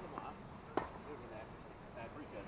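A tennis racket striking a ball: one sharp crack a little under a second in, with faint distant voices around it.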